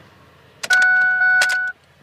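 A steady, high electronic beep about a second long from the truck's dashboard as the ignition is switched to key-on, with sharp clicks at its start and end.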